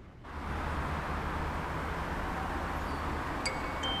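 Steady low road rumble inside a moving car. About three and a half seconds in, light chime-like tones begin.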